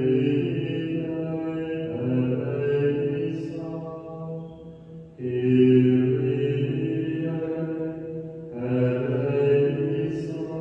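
A man's voice chanting liturgical chant in long held notes, in three phrases, with new phrases starting about five and about eight and a half seconds in.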